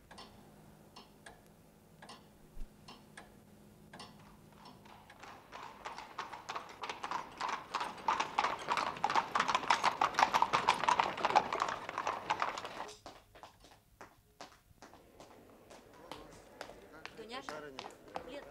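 Horse hooves clip-clopping in an even rhythm, a few strokes a second. They grow louder to a peak about ten seconds in, then fade away quickly, like a horse passing by.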